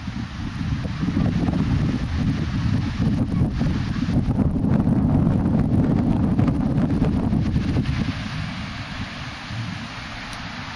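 Wind buffeting a camera microphone: a gusty low rumble that strengthens after the first second and eases near the end, with small waves breaking on the beach underneath.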